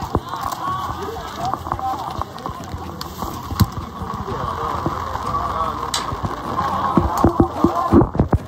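Heavy rain pattering steadily on the stands and their glass barrier, with distant voices under it. A quick run of sharp knocks comes near the end.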